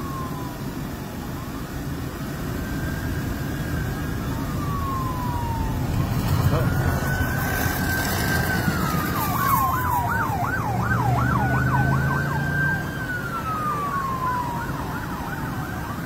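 Police car sirens: a slow rising and falling wail that switches to a fast warbling yelp twice, growing louder about six seconds in.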